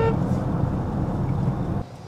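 Steady low engine and road rumble inside the cabin of a roughly thirty-year-old car as it drives, with a brief horn toot right at the start. The rumble cuts off shortly before the end.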